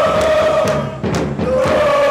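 A crowd of football fans chanting in unison, the massed voices holding a sung note. The chant breaks off briefly about a second in and starts again.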